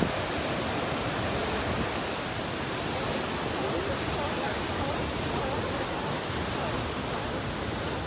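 Ocean surf breaking and washing up a sandy beach, heard as a steady rushing noise with no letup.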